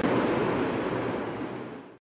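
Steady rushing background noise, fading out over the last half second.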